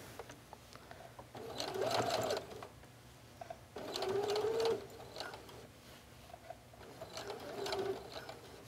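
Brother electric sewing machine edge stitching in three short runs of about a second each, stopping between them while the fabric is guided around a curve.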